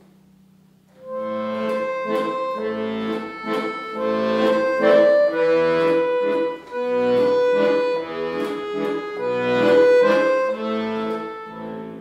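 Piano accordion playing a melody of held notes over chords, starting about a second in, with short breaks between phrases. It is played to show how the instrument can sound sad.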